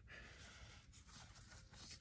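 Near silence: faint outdoor room tone between spoken sentences.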